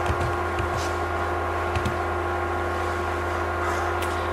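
Steady electrical hum and room noise, with a few faint low thumps in the first second and another about two seconds in.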